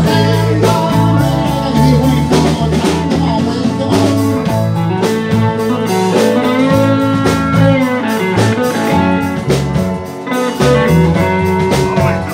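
A four-piece band playing live: electric guitar, electric bass, drum kit and keyboard, over a steady drum beat. Some guitar notes bend in pitch around the middle.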